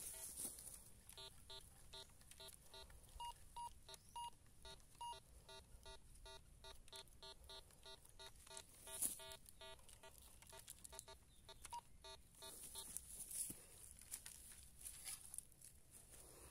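Metal detector giving a faint string of short, rapid beeps, about four a second, for some eleven seconds as its search coil is held over a metal target in the dug hole. The beeps stop near the end.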